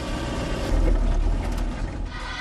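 Four-wheel-drive vehicle driving over a rutted dirt track, heard from inside the cabin: a steady low engine and road rumble that grows louder around the middle.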